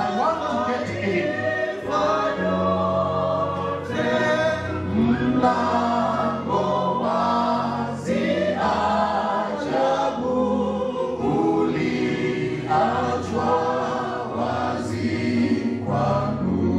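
Singers leading a church congregation in a gospel song through microphones, voices in harmony over sustained low notes that move from chord to chord.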